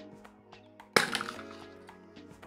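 A sharp plastic snap about a second in, followed by crackling, as a small plastic candy container is pried open, over steady background music.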